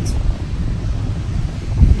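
Wind rumbling on a phone's microphone, an uneven low buffeting that swells near the end.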